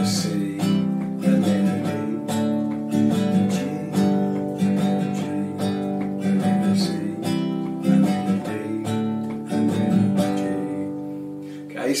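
Nylon-string acoustic guitar strummed through a repeating G, C, D chord progression, fading out over the last couple of seconds.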